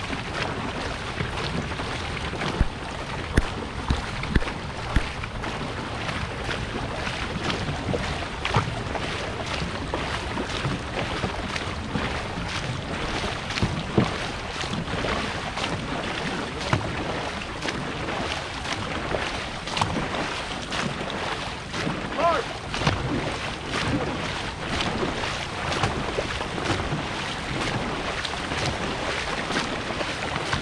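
Dragon boat paddles stroking and splashing through the water with the boat under way at hard effort, over a steady rush of water and wind on the microphone. A few sharp knocks stand out near the start.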